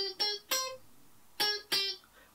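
Electric guitar picking single notes of a riff built around C minor: three quick notes, a pause of about a second, then two more.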